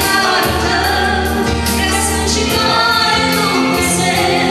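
A woman singing a Romanian Christian hymn through a microphone, over instrumental accompaniment with held bass notes and a steady beat.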